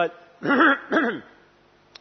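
A man clearing his throat: two short pulses, each falling in pitch, about half a second apart.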